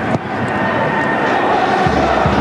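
Football stadium crowd noise: a steady, dense hubbub of many spectators with a faint held note running through it.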